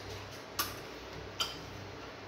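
Two short sharp clicks a little under a second apart: wet mouth clicks of someone chewing a mouthful of fufu close to the microphone, over a low steady hum.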